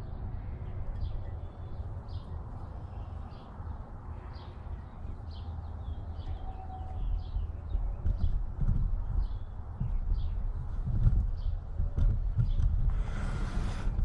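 Low bumps, knocks and rumble as a brake caliper is handled and set down on a flimsy table that shakes the camera, heavier in the second half. Short high chirps repeat faintly above it.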